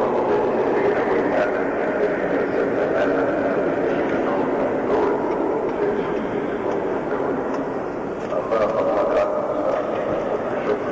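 Many voices of a large congregation sounding together in a steady, unbroken mass, with a man's voice carried over a microphone and hall amplification.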